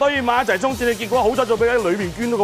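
Race commentator calling the horses to the finish in rapid, excited speech, with background music underneath.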